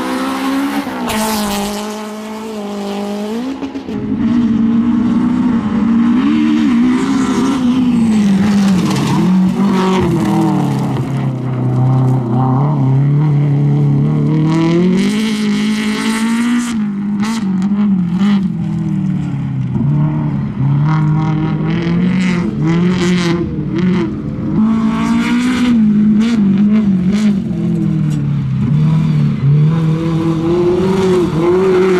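Honda Civic rally car driven hard on a loose gravel stage: the engine revs up and down again and again with throttle and gear changes, pitch falling and climbing through the corners. Sharp crackles come in the second half.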